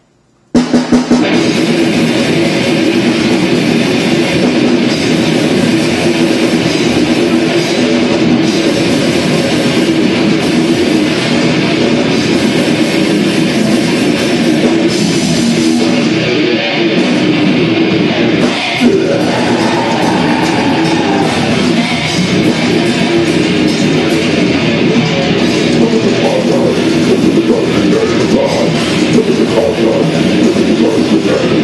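Live heavy metal band starting a fast song: after a moment's hush, a few sharp hits about half a second in, then distorted electric guitars, bass guitar and drum kit playing together, loud and dense.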